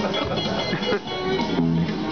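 Les Paul-style electric guitar played through an amplifier: a quick run of single notes, ending on a held low note.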